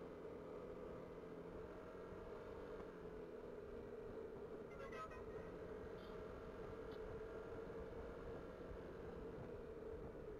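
Faint, muffled, steady drone of a motorcycle riding along the road, with a brief high chirp about halfway through.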